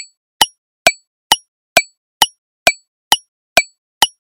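Countdown-timer tick sound effect: short, sharp clock-like ticks, evenly spaced at a little over two per second.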